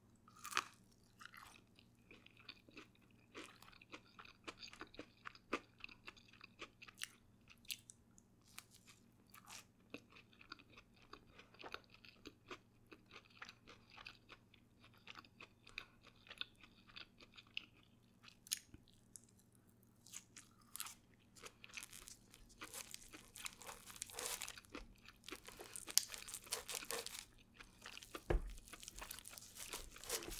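Close-miked chewing of crisp fried funnel cake: a steady run of small crunches and clicks. The crunching grows louder and denser in the last several seconds.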